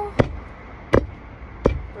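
Three sharp, evenly spaced knocks keeping a steady beat, about one every three-quarters of a second, in a gap between sung lines of a child's song.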